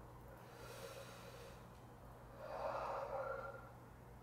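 A man breathing out once, a faint breathy exhale lasting about a second, starting about two and a half seconds in, over a steady low hum.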